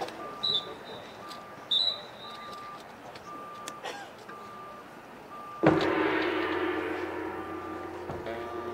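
A short electronic metronome beep sounds about once a second, with two short high whistles in the first two seconds. About five and a half seconds in, the marching band and its front ensemble start playing: a sudden loud sustained opening chord that slowly fades.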